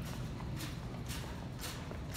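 Footsteps on a hard store floor, about two steps a second, each a sharp click, over a steady low hum.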